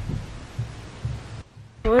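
Muffled drumming from somewhere out of sight, heard as irregular low thumps.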